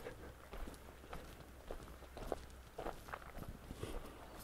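Faint footsteps of a person walking at a steady pace, soft short steps about twice a second.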